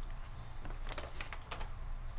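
Sheets of paper being handled at a table: a run of light, irregular clicks and rustles, about half a dozen in the second half, over a steady low hum.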